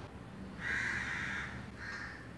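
A bird's harsh calls: one long call in the middle and a short one near the end.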